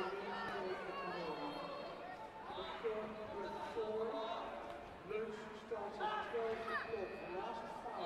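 Mostly speech: a man's voice announcing over a public-address system, with other voices in the hall.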